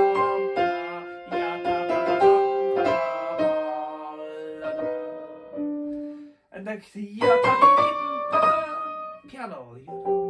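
Grand piano playing a forte passage with the right hand taking a lot of time. The notes ring on and die away about six seconds in, and a new short phrase starts about a second later.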